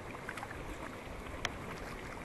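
Kayak paddling: paddle blades dipping into the water, with splashing, dripping and water sloshing around the hull. Small ticks run throughout, with one sharper click about one and a half seconds in.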